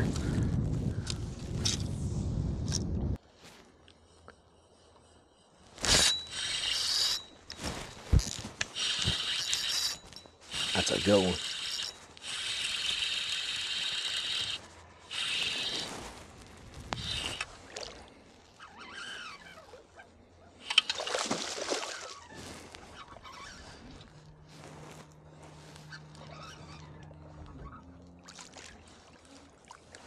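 A bass hooked and fought to the boat: repeated short bursts of buzzing from the fishing reel's drag, which is set too loose, with water splashing. A low steady hum comes in near the end.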